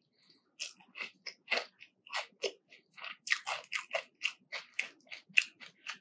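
Close-miked chewing of a bite of crispy breaded, deep-fried fish fillet: a string of short, crisp crunches, about two to three a second, starting just under a second in.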